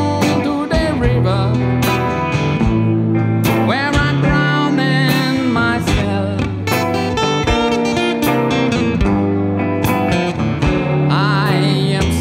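Instrumental blues break played on two guitars, a red hollow-body electric and an acoustic, with bending lead notes over a steady percussive beat.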